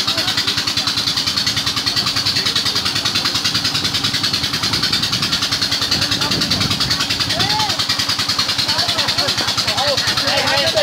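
A small engine running steadily with a rapid, even pulse.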